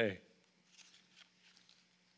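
A man's reading voice trails off at the end of a word, then a pause in the speech with a few faint, brief rustles and a low, steady hum in the room.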